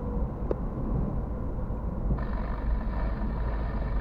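Car cabin noise while driving, heard through a dashcam: a steady low engine and tyre rumble. About halfway through, a steady high-pitched tone joins it.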